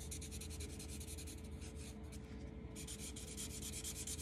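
Black Sharpie marker scribbling back and forth on paper in rapid short strokes, filling in a small shape; faint.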